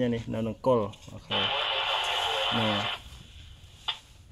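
A man speaking, interrupted in the middle by about a second and a half of steady hiss.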